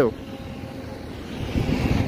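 Steady background noise of highway traffic, with a low rumble swelling near the end.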